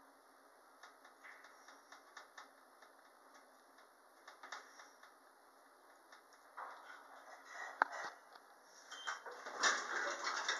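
Inside a descending Otis traction elevator car: a low, steady running noise with faint ticks. It grows louder about six and a half seconds in, with a sharp click near eight seconds, then louder door noise near the end.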